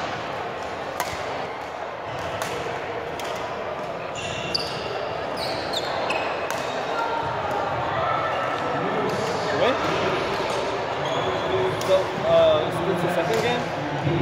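Badminton rackets striking shuttlecocks, a string of sharp clicks, with sports shoes squeaking briefly on a hardwood gym floor. All of it echoes in a large sports hall.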